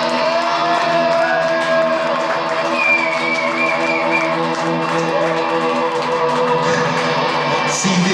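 Live post-punk band with bass and electric guitar holding a sustained chord under a singer's long held note. Crowd shouts and cheering begin near the end.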